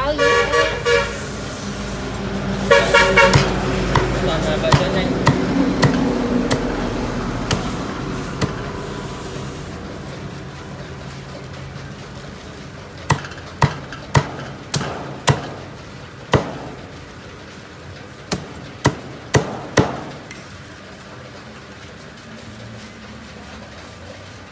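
A cleaver chopping roast duck on a thick round wooden block: a run of about ten sharp chops, mostly in the second half. Near the start, two vehicle horn honks sound over passing traffic noise that fades out.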